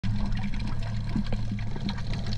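Underwater ambience picked up by a submerged camera: a steady low hum with scattered crackling clicks of moving water.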